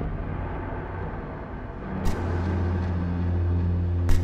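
A dark ambient sound-design drone: a heavy low rumble under a dense noisy hiss. About two seconds in there is a sharp click, and low held tones come in and shift pitch in steps.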